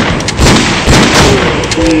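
Gunfire sound effects: a rapid, loud run of shots fired in quick succession.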